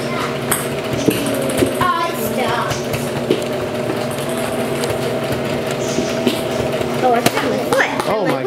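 Brother electric sewing machine running steadily as it stitches fabric, a continuous motor hum with a rapid needle action.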